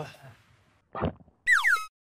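A cartoon-style comedy sound effect added in editing: a short, bright whistling glide that falls in pitch, heard near the end. About a second in there is a brief vocal sound.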